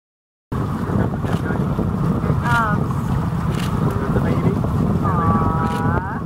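Loud wind buffeting the microphone over a low rumble, cutting in abruptly half a second in. Two short voiced cries come over it: a brief falling one about two and a half seconds in and a longer one near the end.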